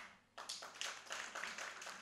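Faint scattered audience clapping that starts about half a second in.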